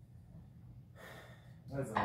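Quiet room just after the music has stopped: a short rush of air about a second in, and a man's voice starting near the end.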